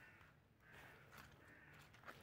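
Near silence, with a faint distant crow cawing.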